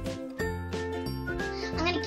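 Background music: a tinkling, bell-like tune over a bass line in a steady rhythm, with a voice coming in near the end.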